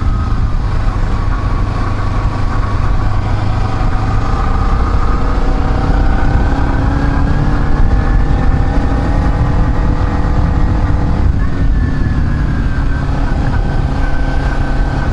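Kawasaki Ninja 250R's parallel-twin engine running under way as the bike gently accelerates, its pitch climbing slowly for several seconds and then easing. The pitch changes about eleven seconds in.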